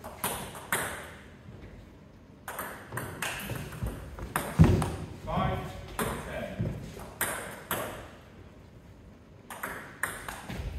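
Celluloid-style table tennis ball ticking off bats and bouncing on the table, sharp separate clicks with short echoes. The ball is bounced between points, then a quicker run of hits starts near the end as a rally begins.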